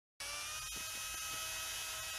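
Small quadcopter drone's electric motors and propellers buzzing in flight, a steady high whine that rises slightly in pitch at first.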